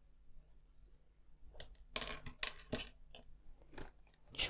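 A run of small clicks and knocks from handling craft supplies on a tabletop: a paintbrush set down and a small plastic pot of holographic glitter picked up. The clicks start about a second and a half in.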